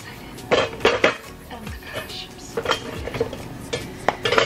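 Serving tongs clattering and scraping against a disposable aluminium foil baking pan as stuffed pasta shells are lifted out. There are several sharp clinks within the first second, then a few more spaced out.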